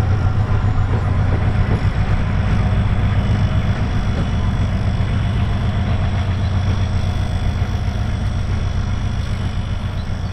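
2TE10L twin-section diesel locomotive's two-stroke 10D100 engines running with a steady deep drone as the locomotive pulls slowly away, the sound easing gradually as it recedes.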